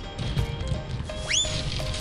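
Background music with short repeated tones over a low rumble. A little past halfway comes a single quick rising squeak, like a whistle sweeping upward.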